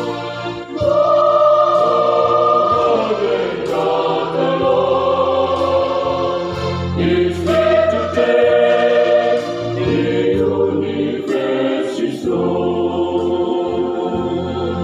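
Choral music: a choir singing sustained chords in harmony, the notes changing every second or two over a steady low bass.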